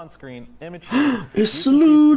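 A voice gasps, then calls out the toy's name "Sludge" stretched into "Sloodge", ending on a long held vowel.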